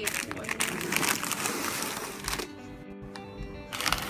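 Clear plastic packaging of rabbit chew toys crinkling as it is handled, over background music. The crinkling is busiest in the first two seconds, eases off, and starts again near the end.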